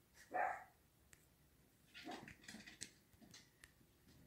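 A puppy barking faintly: one bark about half a second in, then a few quieter yaps between two and three seconds in.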